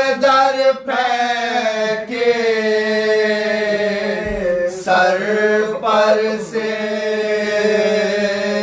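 Male voices chanting a soz, an Urdu mourning elegy, in long drawn-out melodic lines with brief breaths between phrases, over a steady low note held underneath.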